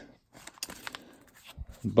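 Faint, irregular crinkling and rustling of a torn wax-paper baseball card pack wrapper and the cards inside it being handled.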